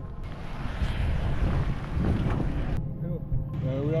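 Wind buffeting the microphone, a rough steady rush with a low rumble underneath.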